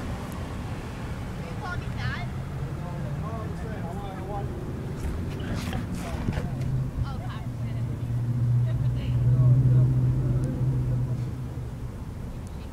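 A car engine running with a steady low hum that grows louder to a peak about nine to ten seconds in, then fades. Faint distant voices can be heard underneath.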